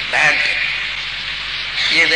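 A steady hiss, strongest in the upper-middle range, in a pause of a man's narration, with a brief fragment of his speech just after the start.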